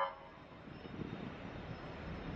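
Steady outdoor traffic noise, a continuous even rumble and hiss with no distinct tone.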